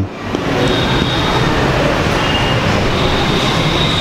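A steady, even rushing noise with no words in it. It rises in level just after the start, then holds steady, with a faint thin whistle-like tone above it.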